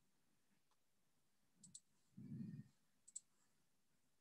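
Near silence with two faint double clicks, about a second and a half apart, and a brief faint low murmur between them.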